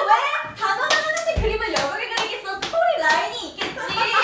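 Several young women laughing and calling out excitedly, with a run of sharp, irregular hand claps and one dull low thump a little after a second in.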